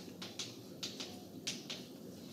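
Chalk writing on a blackboard: a string of sharp, irregular taps and short scratches, several a second, as letters are formed.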